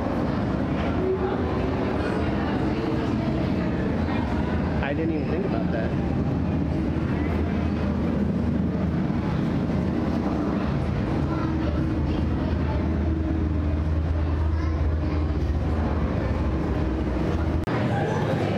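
A steady low hum runs under indistinct voices of people nearby, with no clear words. The hum drops out briefly near the end.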